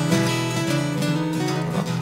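Two acoustic guitars playing a boogie blues rhythm together, strummed and picked with steady notes.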